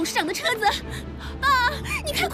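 Speech: a woman talking urgently in Chinese, with drama background music underneath.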